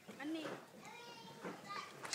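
Faint background voices, children talking and playing at a distance, with no other distinct sound.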